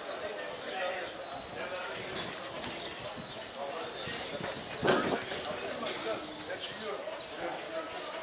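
Busy pedestrian street: many people talking at once, with footsteps clacking on cobblestone paving. A single sharper knock stands out about five seconds in.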